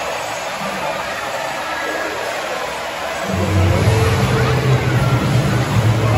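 Crowd chatter from many people. About three seconds in, music with a strong bass starts playing over it and the sound grows louder.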